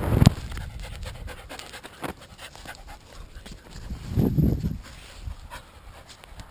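A dog panting hard close to the microphone after running, with a heavy run of breaths about four seconds in. A loud knock comes right at the start, and small scuffs and rustles continue throughout.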